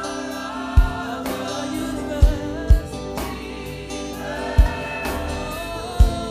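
Gospel choir singing with instrumental accompaniment, punctuated by a few deep drum beats.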